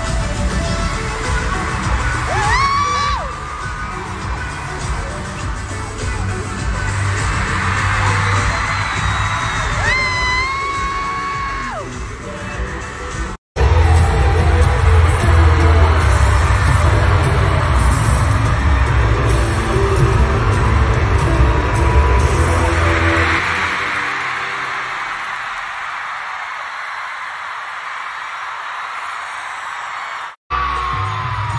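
Live pop-rock band playing loud with strong bass at an arena concert, with high drawn-out screams from fans over it, recorded on a phone. About midway the sound cuts off abruptly into another stretch of loud band music, and near the end the music falls away, leaving the crowd cheering and screaming.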